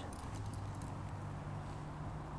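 Wind buffeting the microphone: a steady low rumble with a faint hiss over it.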